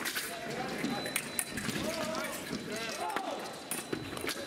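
Fencers' footwork tapping and stamping on the piste, with a few sharp clicks, over a steady babble of voices in a busy competition hall.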